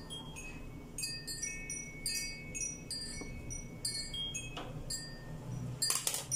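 Wind chimes ringing in the background: many light, irregular strikes, each leaving high ringing tones that fade. A single soft knock comes near the end.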